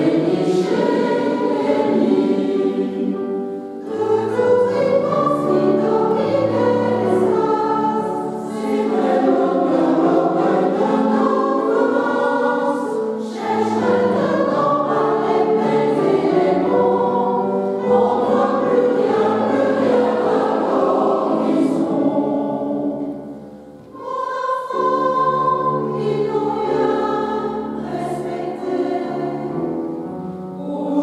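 Large mixed choir singing in a reverberant church, with men's and women's voices in chords, sung in phrases with short breaks between them and a longer breath about two thirds of the way through.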